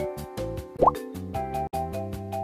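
Light background music, with a single short rising "bloop" sound effect a little under a second in.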